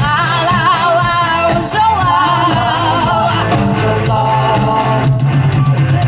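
Live rock band playing a pop cover: a singer holds a long, wavering note with vibrato over drums, bass and electric guitar, followed near the end by a quick run of drum strokes.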